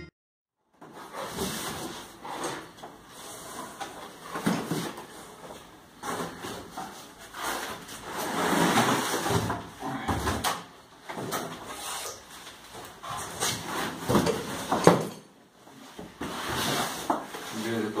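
Cardboard shipping box and plastic packing being handled: flaps scraping and rustling with irregular knocks and bumps as a boxed bicycle is lifted out, one sharp knock standing out near the end.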